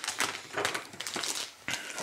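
Hand tools and a plastic blade packet being handled and set down on a wooden workbench: a run of irregular clicks, taps and plastic rustles.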